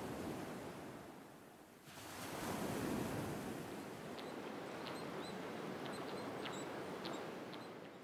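Ocean surf on a reef: a steady rushing wash that fades, then swells again a couple of seconds in and holds. Faint short high chirps come through in the second half.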